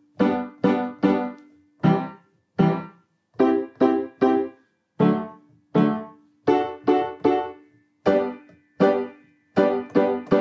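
Piano playing short, detached staccato chords in a bouncy rhythm, stepping through the primary chords of G major: G, C, D, then back to G. Each chord is struck with a forearm bounce and cut off quickly.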